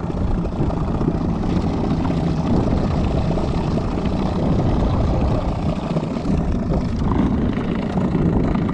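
A motor on the small gigging boat running steadily: an even, low drone with no break.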